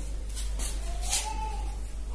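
Felt-tip marker writing on a whiteboard: a few short scratchy strokes and a brief rising squeak about a second in.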